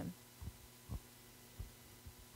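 Handheld microphone handling noise: a few faint, uneven low thumps over a steady low electrical hum.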